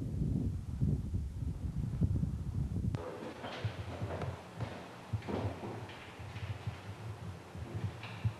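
Wind buffeting the camcorder microphone as a low, gusty rumble for about the first three seconds. It cuts off abruptly and gives way to scattered knocks, creaks and footsteps of people moving about a room with a wooden floor and wooden desks.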